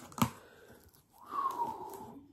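Cardboard shipping box being pulled open by hand: a sharp rip about a quarter second in, then soft handling and a short falling tone past the middle.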